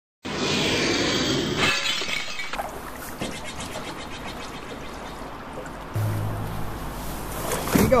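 Intro music, with a crash-like burst of noise over the first two seconds; a voice calls "go" at the very end.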